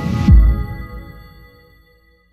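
Cinematic bass-drop impact: a rising whoosh cuts off into a falling-pitch sub-bass boom about a third of a second in, which dies away over about a second and a half as the held synth chord fades.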